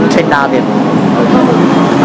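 Steady city road traffic noise under a man talking.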